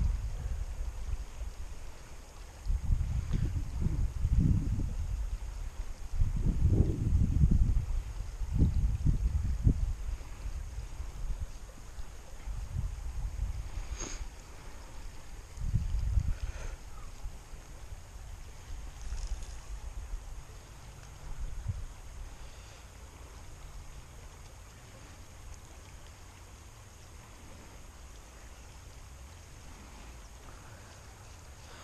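Wind buffeting the microphone in uneven gusts, heaviest through the first third and dying down towards the end, over the faint steady sound of a creek. A single light click comes about halfway through.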